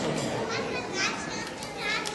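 Young children chattering over one another, with several high voices overlapping.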